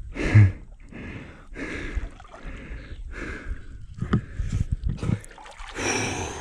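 Water splashing and sloshing around a person standing chest-deep in a river, in a run of short, irregular splashes about once a second.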